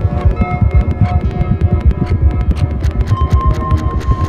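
Experimental electronic music from synthesizers driven by biosonic MIDI signals picked up from a fetus's movements in the womb. A dense, rapid throbbing pulse sits low under shifting held synth tones, and a steady high tone enters about three seconds in.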